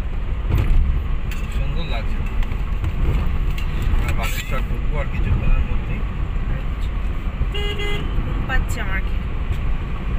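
Steady low rumble of a car driving at speed on a highway, heard from inside the cabin. A vehicle horn gives one short toot about three-quarters of the way through.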